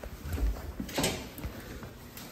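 Soft footsteps and handling noise in a tiled restroom, with a low thump about half a second in and a short click about a second in.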